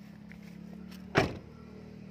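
A van door shut with a single loud thud just past halfway, over a steady low hum.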